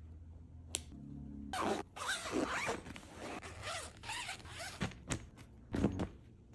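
Zipper on a fabric packing cube being pulled shut in a series of quick rasping strokes, with a few sharp clicks.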